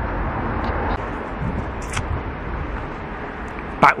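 Steady outdoor background noise, a low rumble with a hiss over it, dropping slightly about a second in.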